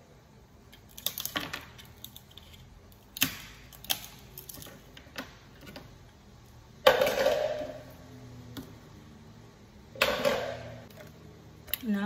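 Ice cubes being popped out of a plastic ice-cube tray and dropped into a plastic cup: scattered small clicks and cracks, then two louder clatters about seven and ten seconds in.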